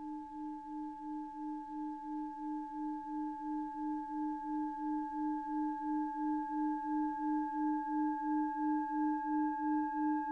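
A sustained ringing tone of the singing-bowl kind: a low note that pulses about three times a second under steadier higher overtones, slowly growing louder, with a further high overtone joining in the second half.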